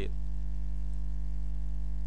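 Steady electrical mains hum: a strong low drone with a ladder of evenly spaced overtones above it, unchanging throughout.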